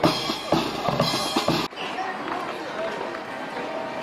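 Marching brass band playing, trumpets and trombones over bass drum and snare strikes, cut off abruptly a little under two seconds in. After it, a quieter background with faint voices.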